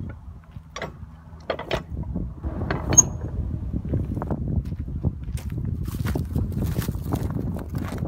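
Rusted manual railway switch being thrown by hand: a few metal knocks and clanks from the lever, a sharp ringing clank about three seconds in, then a continuous grinding scrape of the switch points sliding across.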